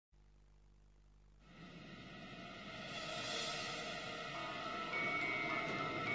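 Eerie background music fading in: almost nothing for the first second and a half, then a swelling, growing louder with held high tones entering near the end.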